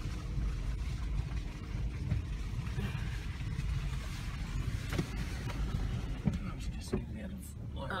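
Toyota Prado driving slowly along a muddy dirt track, heard from inside the cabin: a steady low rumble of engine and tyres, with a few sharp knocks and rattles from bumps in the second half.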